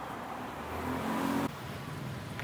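Street traffic: a car passing close on the road, its engine and tyre noise growing louder, then cutting off abruptly about one and a half seconds in.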